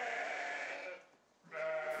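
Scottish Blackface sheep bleating. A sound fades out over the first second, there is a short pause, then a low, steady bleat comes near the end.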